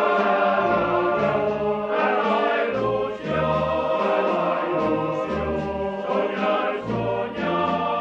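Choir singing held notes over a band accompaniment, with low bass notes marking a steady beat underneath.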